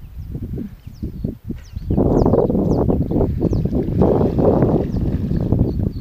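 Close rustling and buffeting at the microphone, louder and steady from about two seconds in, with faint high chirps in the first two seconds.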